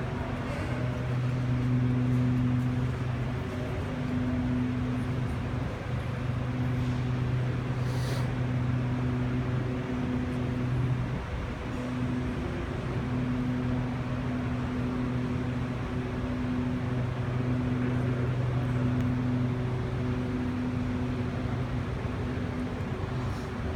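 A steady low hum with evenly spaced higher overtones, over a constant background wash of noise.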